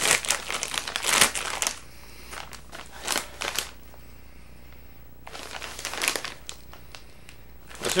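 Plastic snack bag crinkling and tearing as its top is pulled open, dense crackling for the first couple of seconds, then quieter rustles and handling of the bag with another spell of rustling near the end.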